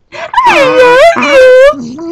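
A dog moaning or 'crying' while being hugged and kissed: two long, wavering cries that rise and fall, then a shorter, lower one near the end.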